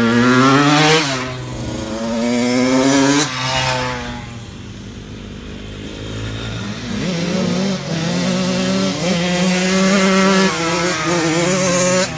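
Dirt bike engine revving: its pitch rises twice in the first three seconds, eases off for a few seconds, then runs at a moderate speed with small rises and falls.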